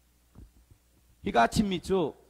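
A short pause with a faint steady low hum and a soft low thump, then a man's voice starts speaking loudly into a microphone just over a second in.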